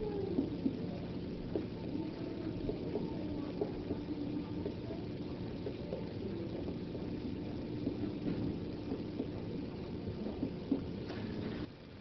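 Finger-on-finger percussion of the abdomen: light, scattered taps on the belly, which give a tympanic note over bowel gas. A steady low hum runs under them.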